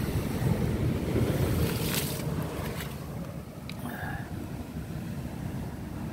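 Wind buffeting the phone microphone over a steady wash of ocean surf on a rocky shore, with a brief sharp noise about two seconds in.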